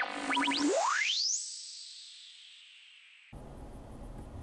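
Comedic editing sound effect replacing the car's audio: a brief low buzzing note with quick upward chirps, then a fast rising whistle-like glide that ends in a high ringing tone fading away over about two seconds.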